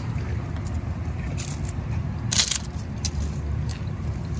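A steady low background rumble, with two brief scraping noises, one about a second and a half in and a louder one near two and a half seconds.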